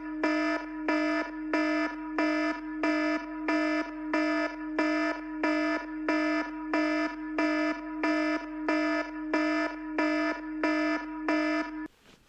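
Electronic alarm sounding a buzzy tone that pulses about one and a half times a second, cutting off suddenly near the end.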